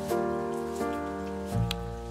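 Soft background piano music, with a single sharp knife chop on a wooden board near the end.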